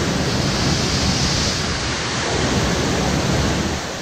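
Rocket launch pad water deluge system at full flow: a huge volume of water gushing out and pouring into the flame trench, heard as a steady, heavy rush of water.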